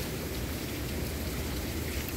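Steady rushing noise of flowing water, with a low rumble underneath.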